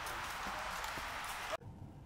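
Footsteps of several people walking on a dirt forest path, over a steady hiss of outdoor background; the sound cuts off suddenly about a second and a half in.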